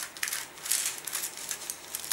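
A strip of baking paper rustling and crinkling as it is handled and measured, in short, irregular scrapes.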